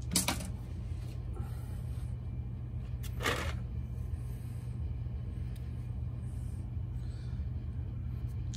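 Small stones clicking against each other and the plastic container as a hand picks through them: a short clatter right at the start and another about three seconds in, over a steady low hum.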